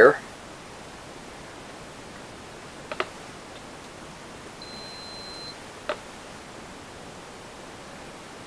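A digital multimeter's continuity beeper sounds once, a short steady high beep, about halfway through, over quiet room tone. Two light clicks come about three seconds apart, one before the beep and one after.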